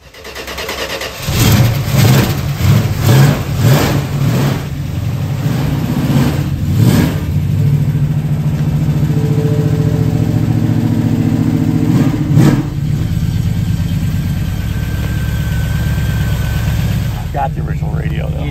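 1974 Dodge Challenger's original V8 starting and catching about a second in, then revved with several quick blips before settling into a steady idle, with one more sharp blip near the middle.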